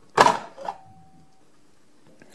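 A plastic doorbell chime cover being pulled off its base: one short, loud snap or clatter about a quarter of a second in. It is heard as a YouTube video played back over a room's speakers.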